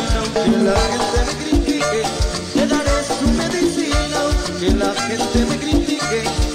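Live salsa band playing an instrumental passage: timbales and congas over a steady low beat about three times a second, with pitched instrument lines above.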